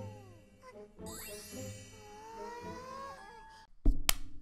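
Anime soundtrack: sparkling chimes and jingles over light music, a cute magical-transformation effect with gliding tones. It drops out shortly before the end.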